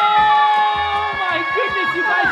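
Women letting out one long, high, excited scream of celebration, held at a steady pitch, over background music.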